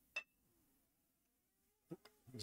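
Near silence, broken by a brief faint click just after the start and another just before the end.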